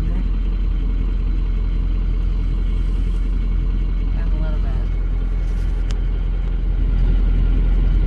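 Pickup truck engine running, a steady low drone heard from inside the cab, growing a little louder about a second before the end.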